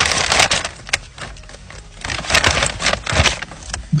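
Brown paper bag rustling and crinkling as it is handled, in two bouts with small clicks.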